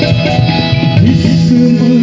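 Live Indian light-music band playing an instrumental passage of a ghazal: a plucked string melody over keyboard, harmonium and hand drums.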